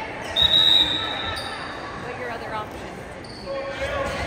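Referee's whistle blown once for the serve: a single high, steady blast of about a second, echoing in a large gym.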